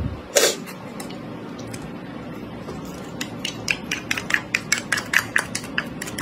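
Wooden chopsticks knocking and scraping against metal, a tin can and a steel tray, as sauce is worked out of the can: one louder knock near the start, then a quick run of sharp clicks, about four or five a second, from about halfway in.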